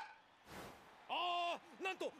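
Anime soundtrack: a sharp knock of a bat meeting the ball in a bunt right at the start, a short soft noise about half a second in, then from about a second in a man's voice in Japanese calling out the play.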